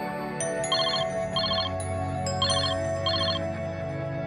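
Soft ambient background music with sustained notes. Over it a telephone rings in two pairs of short trilling rings.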